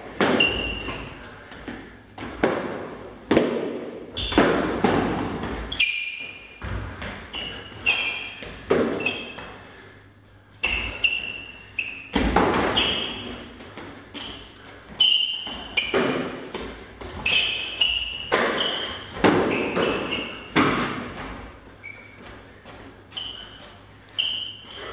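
Training sabres clashing in a sparring bout: quick, irregular hits and thuds in runs of several, echoing in a large hall, with short high-pitched rings among the hits.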